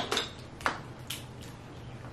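Cooked Dungeness crab shell being cracked and picked apart by hand: four or five sharp clicks and snaps in the first second or so, the loudest just over half a second in, then quiet handling.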